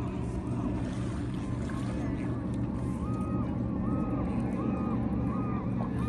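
Birds calling over and over in short arching cries, above a steady low rush of noise.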